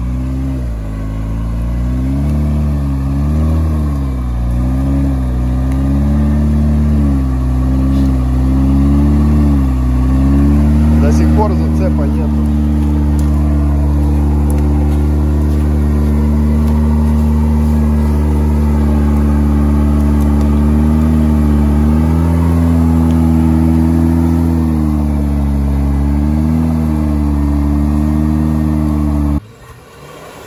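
Engine of a modified UAZ off-roader labouring under heavy load as it ploughs through deep mud. The revs rise and fall for the first ten seconds or so, then hold steady. The sound cuts off abruptly near the end.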